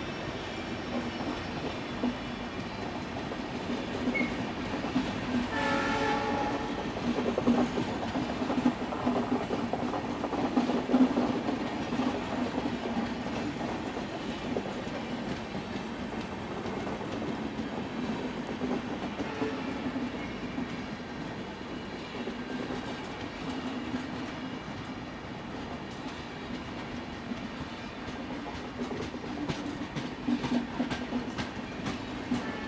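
Express train coaches rolling past with a steady clickety-clack of wheels over rail joints. A short horn blast from the EMD WDP4 diesel locomotive sounds about six seconds in.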